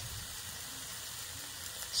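Beef suya skewers sizzling steadily on an electric grill.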